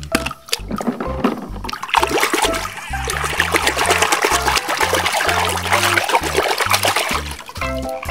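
A hand swishes a toy car through soapy water in a plastic tub, splashing continuously from about two seconds in until shortly before the end, over background music with a bass line.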